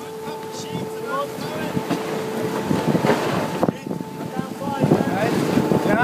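Wind buffeting the microphone and water rushing past the hull of a Tempus 90 sailing yacht beating upwind through choppy sea, with faint crew voices in the background.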